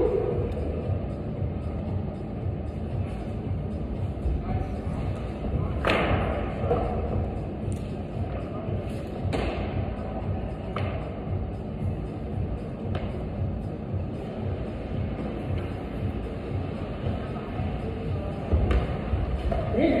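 Indoor climbing gym ambience: a steady low rumble with background music and distant voices, broken by scattered thumps and knocks, the loudest about six seconds in.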